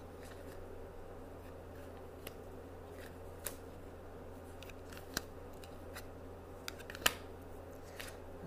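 Tarot cards being drawn from the deck and laid down on a cloth: a few scattered short, sharp card snaps and clicks, the loudest about seven seconds in, over a steady low hum.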